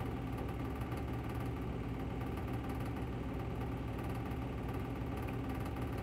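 Steady low mechanical hum, unchanging, as from a running motor.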